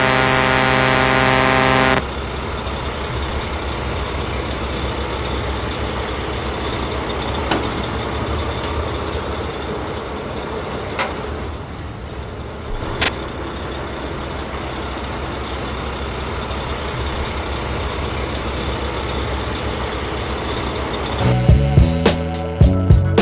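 A truck horn blares steadily for about two seconds, then a steady, noisy engine-like rumble runs on, broken by a few sharp clicks. Music comes back in near the end.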